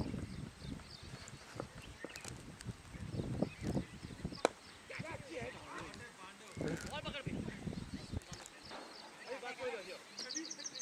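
Players' voices calling across a cricket field, with one sharp crack about four and a half seconds in: a cricket bat striking the ball.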